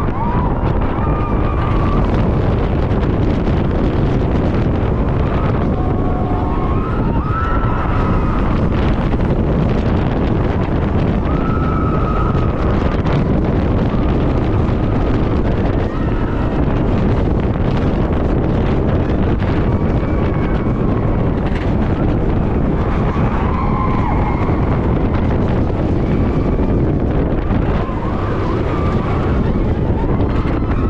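Wind blasting the onboard camera microphone over the rumble of the Iron Gwazi coaster train running at speed on its Rocky Mountain Construction steel track. Riders scream several times along the way.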